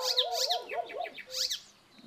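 Birds chirping and calling: a few quick, high chirps over a run of lower, wavering calls, dying away near the end.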